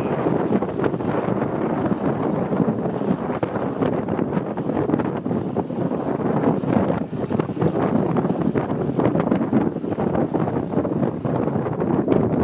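Wind buffeting the microphone over the rush of water along the hull of a small trimaran under sail in choppy water, with a steady uneven roar and many small gusty spikes.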